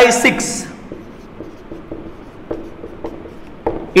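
Marker pen writing on a whiteboard: a run of short scratchy strokes and light taps, faint beside the voice.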